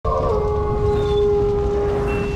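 Wolf howl sound effect: one long, steady howl that dips slightly in pitch just after it starts, over a low rumble.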